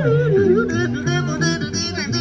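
A small vocal group singing into microphones over a PA, voices gliding in pitch, with a steady, pulsing bass line underneath.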